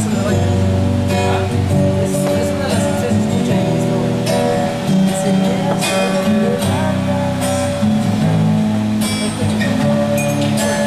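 Acoustic guitar being strummed, chords ringing in a steady rhythm.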